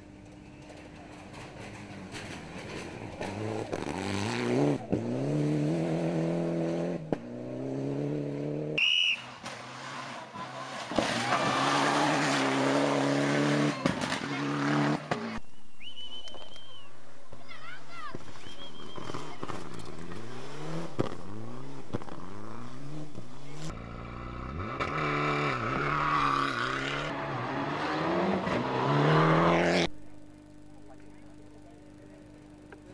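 Rally cars, among them a Mitsubishi Lancer, running flat out on a gravel stage. Each engine climbs in pitch through the gears and drops at each shift. The sound changes abruptly at several cuts between cars and is loudest near the end as a car comes close.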